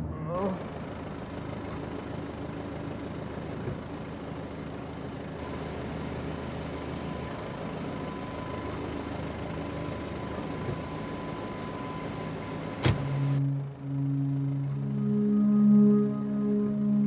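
Steady street background noise around a parked car, broken about thirteen seconds in by a single sharp knock of a car door shutting. Soft background music of long held tones starts right after.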